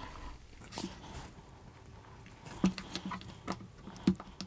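Hands handling a binder-clipped paper booklet during staple binding: soft paper rustling and a few light clicks and taps.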